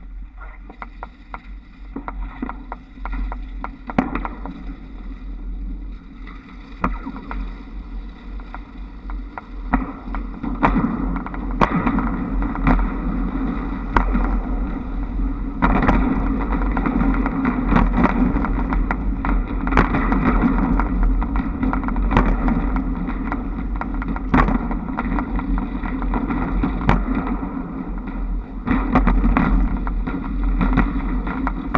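Wind and rolling rumble on a camera mounted on the roof of a Škoda 21Tr trolleybus, growing louder about ten seconds in and again near sixteen seconds as the bus picks up speed. Frequent sharp clicks run through it as the trolley pole shoes pass over the overhead wire hangers.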